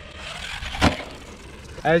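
Electric RC monster truck driving across concrete toward the microphone, its tyres and motor making a rushing sound that builds, with one sharp knock a little under a second in, then eases off.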